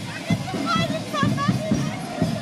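Street parade sound: music with a steady drum beat of about three beats a second, under the chatter of a crowd, with a high-pitched voice calling out about a second in.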